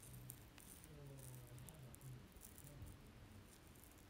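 Near silence: faint room tone with a few faint ticks and a brief faint low hum.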